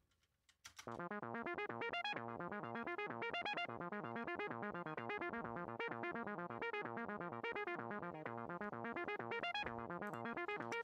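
Synthesizer arpeggio from Cubase's built-in Prologue synth playing back: a fast, steady run of short repeating notes that starts just under a second in, swept left and right by an AutoPan effect.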